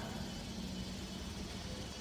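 A faint, steady low hum of background noise with no distinct events.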